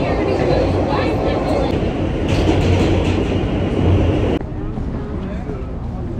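New York City subway car in motion, heard from inside: a loud, steady rumble and rattle of the moving train. It cuts off suddenly about four seconds in, giving way to quieter city street noise.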